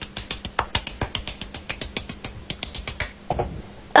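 A quick run of sharp clicks, about eight a second, dying away shortly before the end.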